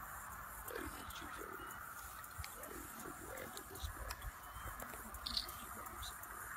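Faint, low murmured voices during close-up coaching, over a steady high-pitched outdoor drone, with a few light clicks.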